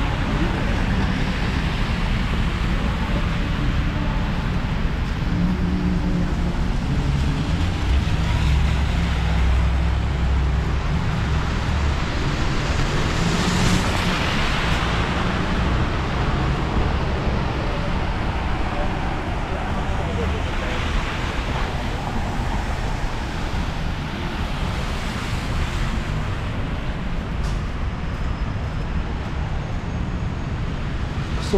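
City street traffic on a wet, slushy road: a steady wash of tyre hiss and engines. A low rumble swells near the middle and a city bus goes by.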